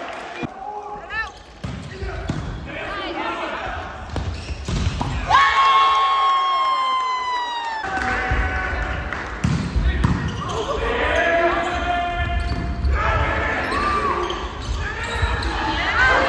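Volleyball game in a large gym: players and spectators shouting and calling out, with sharp knocks of the ball being struck and bouncing on the hardwood floor.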